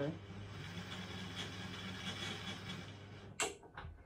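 Hornby model locomotive's small electric motor running on the track with a steady low hum and whirr, cutting out a little over three seconds in, followed by a few sharp clicks. The locomotive is stalling and will not keep going even with a push.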